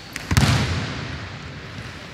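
A wrestler's body landing on the wrestling mat: one heavy thud about a third of a second in, echoing through the large hall as it dies away.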